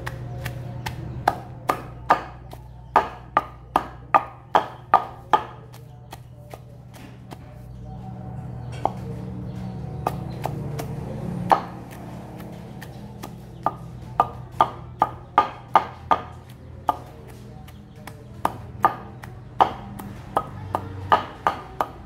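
A long wooden pestle pounds shallots, garlic and chilies in a deep wooden mortar. The sharp knocks come about two to three a second, in runs broken by pauses and a few single strokes, over a steady low hum.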